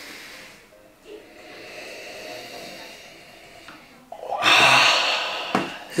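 Whiskey being nosed from a glass: drawn-in sniffs through the nose, then a loud, forceful breath out about four seconds in, a reaction to the sting of a strong, spicy whiskey.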